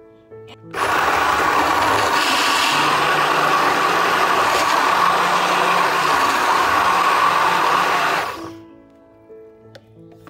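Immersion hand blender running for about seven seconds, starting about a second in and stopping near the end, blending frozen strawberries, banana and yogurt in a plastic cup. Background music plays underneath.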